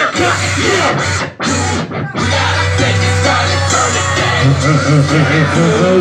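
Live rap performance played loud through a club PA: a rapper's voice over a backing track with a heavy bass beat. The music drops out briefly twice between about one and two seconds in, then the beat comes back in.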